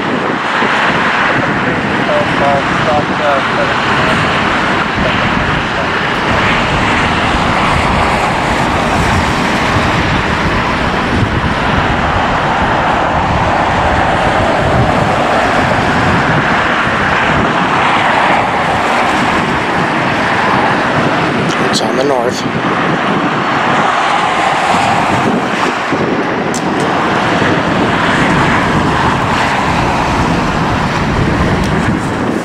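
Twin-engine business jet taking off, its engines a steady loud roar, with a few sharp clicks about two-thirds of the way through.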